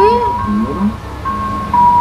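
Music from a television: a simple melody of long held notes that step in pitch over a steady low note, with a voice talking briefly over it in the first second.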